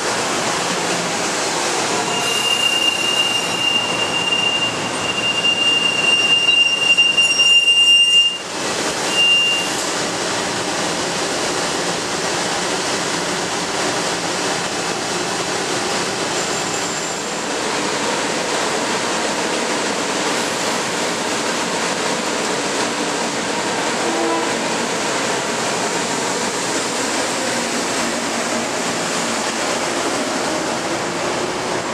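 Metro-North electric commuter train braking to a stop, its brakes giving a steady high squeal that cuts off about eight seconds in, with a brief squeal again just after. The train then stands with a steady hum of running equipment, and near the end it starts to move off.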